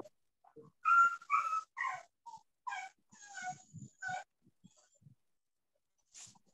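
A small dog whining or yelping over a video call's audio: a run of about seven short, high calls in quick succession, the loudest near the start.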